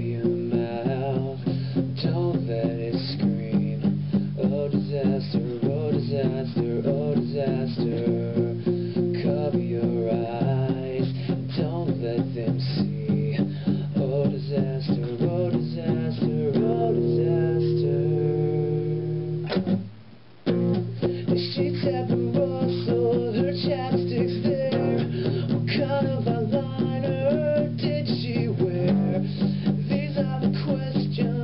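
Acoustic guitar playing chords in a steady rhythm, with a held chord and then a short break about twenty seconds in before the playing starts again.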